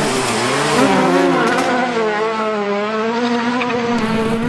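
Race-car engine sound effect running at high revs, its pitch wavering, with a rushing hiss over it for the first second and a half or so.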